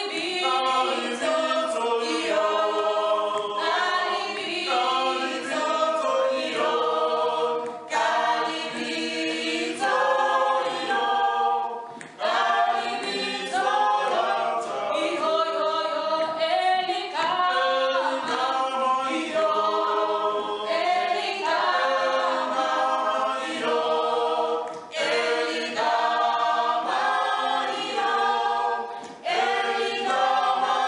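A small mixed group of men and women singing a cappella in harmony, with no instruments. The singing runs on in phrases, with a few brief pauses for breath between them.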